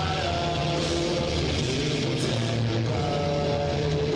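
A rock band playing live, with a loud, dense wall of sustained distorted electric guitars.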